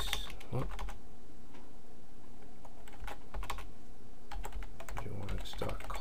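Computer keyboard typing in short bursts of keystrokes with pauses between them, over a steady low hum.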